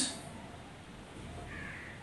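Quiet room tone in a short pause between spoken phrases, with a faint, brief call about one and a half seconds in.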